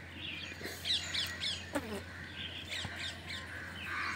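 Faint bird calls in the background: several short chirps, with a low steady hum underneath.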